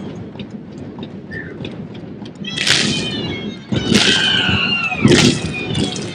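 Three shrill, high vocal cries, the first about two and a half seconds in and the next two about a second apart, over a background of crowd noise. A low thud comes with the last cry.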